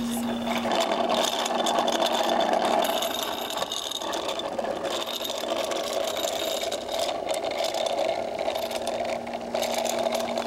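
Child's bicycle with training wheels rolling over concrete, its small wheels giving a steady whirring rattle.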